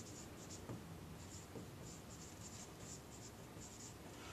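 Marker writing on a whiteboard: a faint run of short, quick pen strokes.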